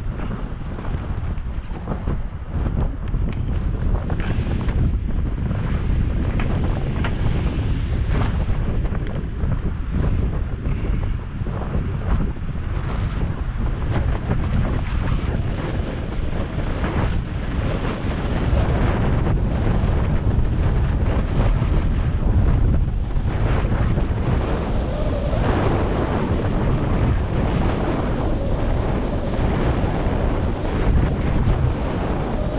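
Wind buffeting the microphone of a bicycle-mounted action camera while riding, a steady low rumble that gets a little louder about halfway through.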